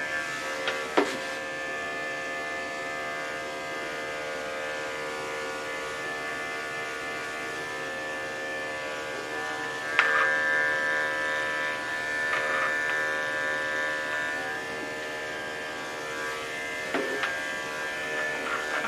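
Electric dog-grooming clippers running with a steady motor hum, louder from about ten seconds in. A few sharp clicks come near the start and near the end.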